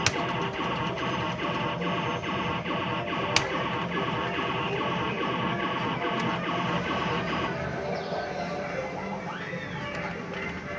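Fruit machine being played, its reels spinning, over a continuous jumble of electronic machine tunes and jingles in an amusement arcade. There is one sharp click about three and a half seconds in, and a short rising-and-falling electronic tone near the end.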